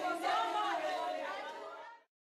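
A crowd's voices chattering together, fading out and cutting to silence at the very end.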